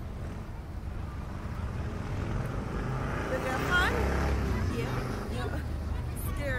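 Low, steady wind rumble on the microphone of the ride's onboard camera as the reverse-bungee capsule hangs and sways, with voices rising briefly around the middle.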